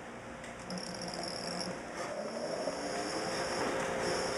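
Electric motor scooter pulling away, its motor whine rising in pitch over the last two seconds as it gathers speed.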